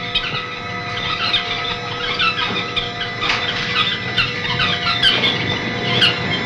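Many caged birds chirping and twittering continuously in quick, overlapping short calls, over a steady hum.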